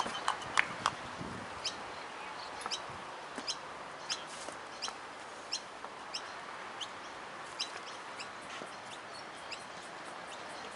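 Birds chirping in short, high calls scattered irregularly, about one a second, over a steady background hiss.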